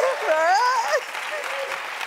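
Studio audience applauding, with a man's voice over the first second.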